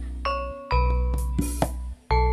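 Instrumental langgam campursari music: an electronic keyboard plays bell-like notes over a sustained bass, punctuated by sharp percussion strokes. The music briefly drops out about two-thirds of a second in and again near the end.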